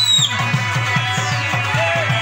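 Live Pashto folk music with no singing: a harmonium holding sustained notes over quick tabla bass strokes, about six a second, each with a falling pitch, and a plucked rubab.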